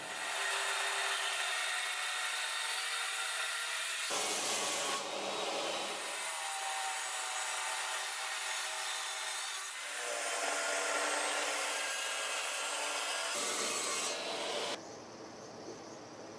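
Table saw cutting wood: a steady rushing noise that shifts every few seconds as the cuts go through, stopping about a second before the end.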